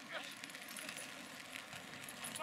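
Faint, distant shouting from rugby players across the field, a brief call near the start, over quiet open-air background noise.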